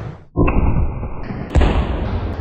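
Two loud bangs of a stack of store-bought explosive targets blowing up after a rifle shot, one about a third of a second in and another about a second and a half in, each trailing off in a rumble.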